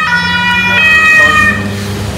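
Two-tone emergency-vehicle siren sounding close by, switching between notes, with a vehicle engine rumbling underneath. The siren stops about a second and a half in.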